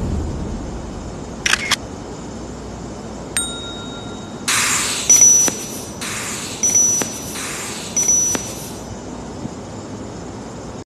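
Intro-animation sound effects for a like-and-subscribe banner: a quick double click about a second and a half in, a short bell-like ding, then a string of four short hissy bursts like camera shutters.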